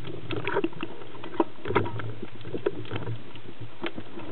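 Underwater sound picked up by a camera on a speargun: a steady low hum with irregular clicks and knocks, the sharpest about a second and a half in.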